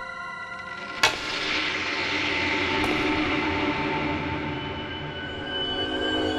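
Suspenseful background score of held tones. About a second in comes a sharp loud bang, followed by a rushing swell that slowly fades.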